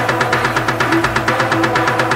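Gqom electronic dance music in a fast drum roll: rapid percussive hits, about eight a second, each with a short bass tone that drops in pitch, over sustained synth tones.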